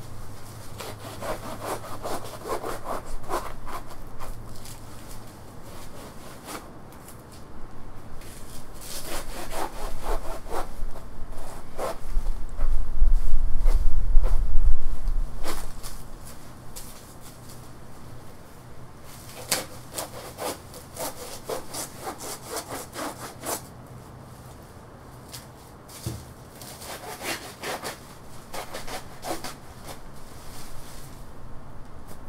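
Saw cutting through a felled banana stalk in bursts of rapid back-and-forth strokes with pauses between. A loud low rumble comes about halfway through.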